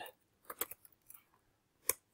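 Keystrokes on a computer keyboard: about half a dozen separate key clicks, spaced irregularly, with the loudest near the end.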